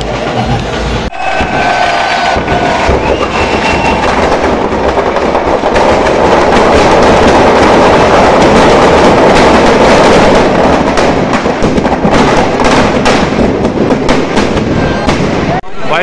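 Firecrackers packed in a burning Ravan effigy going off in a dense, continuous crackle of rapid bangs, with crowd voices underneath. The crackling starts about a second in, is thickest around the middle and cuts off suddenly near the end.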